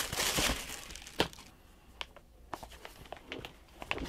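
Paper crinkling and rustling as a sneaker is pulled out of its box. The rustling dies down after about a second and a half into a few light clicks and taps.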